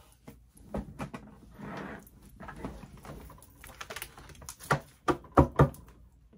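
Tarot cards being handled on a table: scattered clicks and rustles as cards are slid and gathered, then a few sharp knocks near the end as the deck is picked up and knocked against the table.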